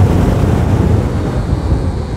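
Royal Enfield Scram 411 single-cylinder engine and road noise, largely buried under heavy wind buffeting on the microphone. The noise eases slightly in the second half as the bike is braked hard.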